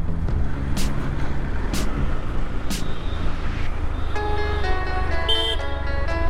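Motorcycle engine running steadily at riding speed under background music; a melody of steady notes comes in about four seconds in.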